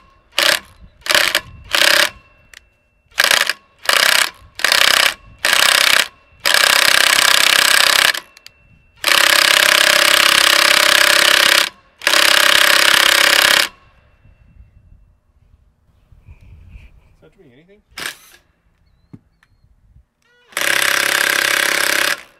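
Cordless drill run on the manual input of a barn-curtain winch motor. First comes a string of short trigger blips about twice a second, then three runs of a few seconds each with a steady whine. A last run comes near the end. The drill spins but the curtain does not wind up.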